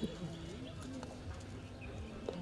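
Faint talk from people standing nearby, over a low outdoor rumble, with a few weak ticks.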